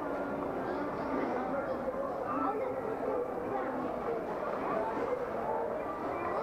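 Indistinct chatter of several voices in a busy shop, over a steady background noise of the store.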